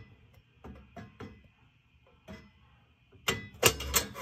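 Steel burner tube of a Burnham gas boiler being worked into its slot by hand: a few light, scattered metal clicks, then louder clinking and clattering near the end.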